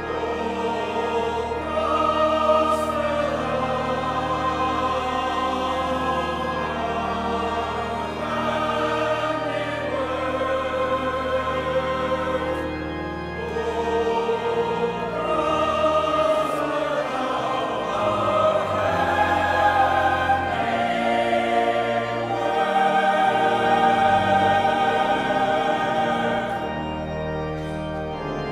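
Choral music: a choir singing long, sustained phrases over steady low organ notes.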